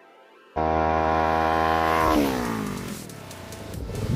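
A motorcycle engine held at high, steady revs, starting abruptly. About two seconds in, its pitch drops and fades as the bike passes by.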